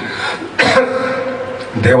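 A man clearing his throat during a pause in his speech: a sudden burst about half a second in, with fainter voiced sound trailing after it.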